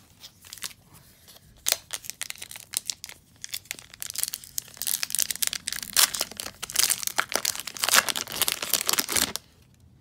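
A foil baseball-card pack wrapper (2020 Topps Update Series) being torn open and crinkled by hand: scattered sharp crackles that become a dense run about four seconds in and stop just before the end.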